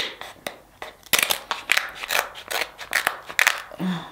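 Kitchen scissors snipping through a king crab leg's shell: a run of sharp crunching cuts and cracks, a few at first and coming thick and fast from about a second in.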